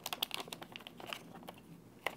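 Metallized anti-static bag crinkling in the hands as a 2.5-inch SSD is worked out of it: a run of faint, irregular crackles, thickest in the first second.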